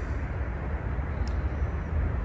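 Steady low rumble of outdoor urban background noise, with a faint tick a little over a second in.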